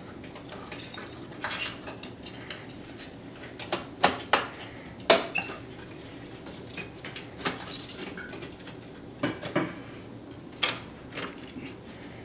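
Irregular light metallic clinks and clanks as the sheet-metal pan of a radiant surface heating element is handled and pushed into its mounting on a glass-top electric range, the strongest a few seconds in and again near the end.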